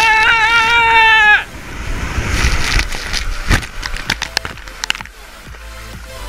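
A long, high, held yell lasting about a second and a half, then water rushing and splashing as a rider slides down a steep water slide into the run-out.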